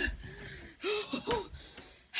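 A boy gasping and letting out about four short, strained vocal sounds in quick succession, a pained reaction to the burn of spicy food.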